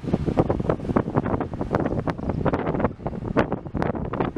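Wind buffeting the microphone in gusty, irregular bursts over a low rumble of a car in motion.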